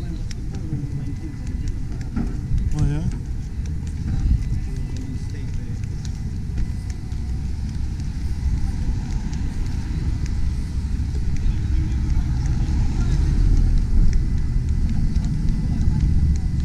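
Street ambience: a steady, uneven low rumble from car traffic and wind buffeting the microphone, with brief snatches of people talking about three seconds in.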